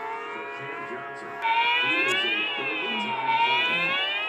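A quieter steady tone, then about a second and a half in a loud, siren-like wailing tone comes in and slowly rises and falls in pitch.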